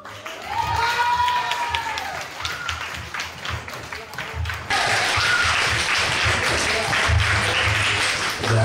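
A small group applauding, with voices calling out near the start. The clapping gets louder and denser about five seconds in.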